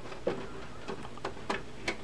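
Small irregular clicks and taps of fingers against cables and plastic inside a desktop PC case as a hand feels for a front-panel retaining tab, over a faint steady hiss.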